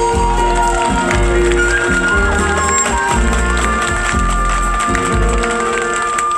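Live band music with a steady beat of bass pulses and percussion under a keyboard-led melody, which settles on one long held note in the second half.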